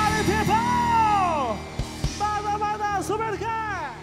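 Live funk-rock band music at the close of a song, with the lead singer's voice sliding up and down in long arcing calls over the band, which thins out toward the end.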